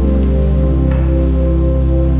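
Slow instrumental keyboard music: sustained chords over a long-held deep bass note, the chord changing once about two-thirds of a second in.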